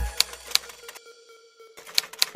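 A few sharp single keystroke clicks on a computer keyboard, with background music fading out under them and dropping away, leaving a short quiet gap before the last click.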